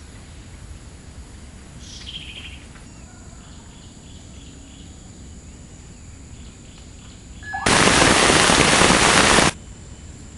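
Outdoor background with a single bird call about two seconds in and faint repeated chirps after it. Near the end a loud, even hiss lasts about two seconds and cuts off suddenly.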